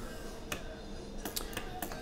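Several sharp computer mouse clicks over a faint hiss: one about half a second in, then a quick run of clicks in the last second.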